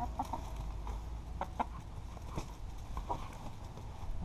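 Backyard hens clucking: a few short, soft clucks scattered through, over a low steady rumble.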